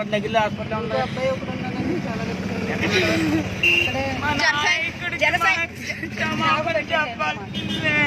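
Women talking inside a moving vehicle, over the steady low drone of its engine.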